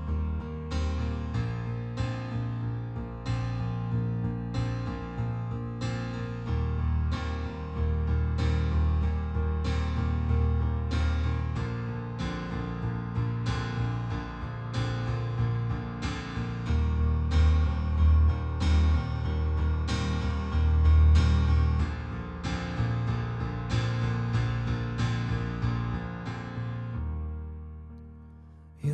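Digital stage piano playing a solo instrumental song intro: a driving figure of chords struck about every three quarters of a second over sustained low bass notes. The playing fades away near the end.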